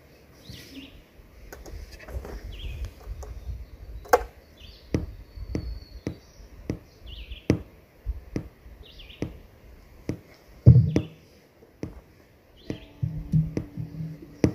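A bird chirping over and over, a short high call every second or two, over knocks and clunks from an instrument and gear being handled on a wooden stage, with one heavy thump about eleven seconds in. A few plucked string notes sound near the end as the instrument is readied.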